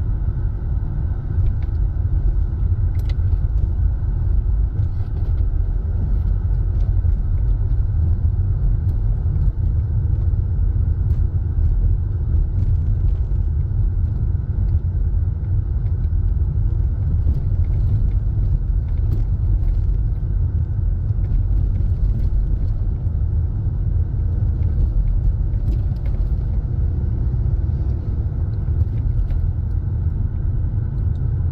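Steady low rumble of a car driving at an even speed: road and engine noise with no revving or braking.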